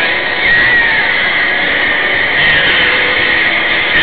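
Steady road and wind noise from an SUV driving at highway speed, picked up by its dashcam as an even hiss.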